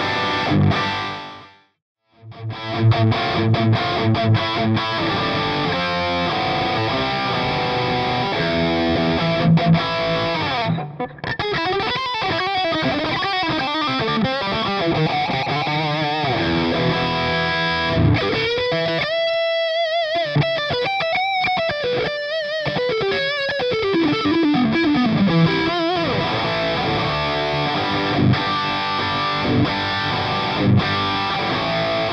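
Distorted electric guitar, a Suhr Classic played through a Kemper preamp and a Soldano 4x12 cabinet impulse response with Celestion Vintage 30 speakers. It plays riffs with a brief gap about two seconds in, then lead lines with bent notes and wide vibrato from about eleven seconds in, including a long falling slide near the end.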